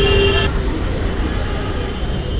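A vehicle horn sounds a steady tone and cuts off about half a second in, leaving street traffic noise with voices in the background.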